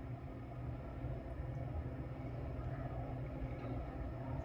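Low, steady background rumble with no distinct event standing out.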